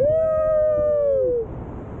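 Two people on a tandem paraglider whooping a long, held "wooo" together in excitement, lasting about a second and a half and dropping in pitch as it ends.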